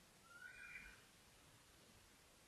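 Near silence: room tone, with one faint, brief, high chirp lasting under a second, shortly after the start.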